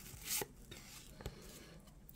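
Thin cardboard trading cards being handled as the top card of a small stack is slid off to the next one: one short, quiet swish about a third of a second in and a faint tick a little past a second.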